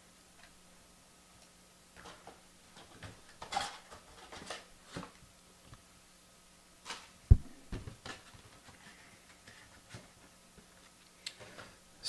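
Scattered light knocks and rustles of a cardboard trading-card box being handled and moved aside, with one sharper low thump a little past halfway as it is set down.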